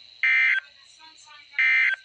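Midland NOAA weather alert radio beeping its alert tone twice, short electronic beeps about 1.3 seconds apart, signalling a received Required Weekly Test. A faint steady high whine runs underneath.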